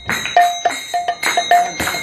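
Mridangam played by hand in a quick rhythm of about four strokes a second, many strokes ringing with a clear pitched tone.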